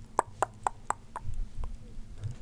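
Five light clicks in an even run, about four a second, then stopping about a second in.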